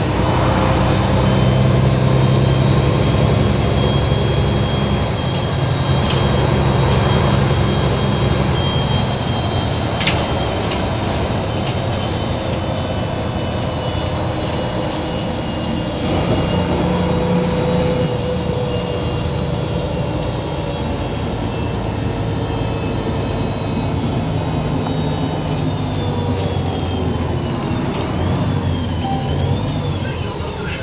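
Volvo 7700 city bus heard from inside the passenger cabin while driving: a steady low engine drone that swells and eases off several times, with road noise and a thin high whine that bends down in pitch near the end.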